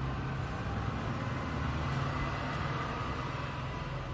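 A steady low machine hum, even throughout, with no clear knocks or splashes.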